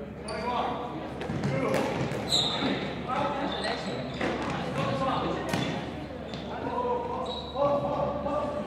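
Players' shouts and calls echoing around a large sports hall, mixed with running footsteps and sneaker squeaks on the gym floor, one sharp squeak standing out about two and a half seconds in.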